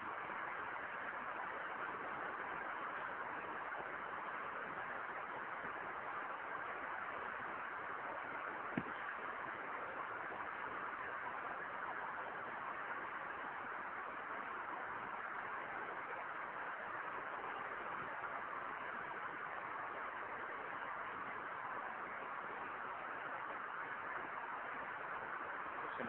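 Steady hiss of a low-bandwidth audio recording with no speech, and a single faint click about nine seconds in.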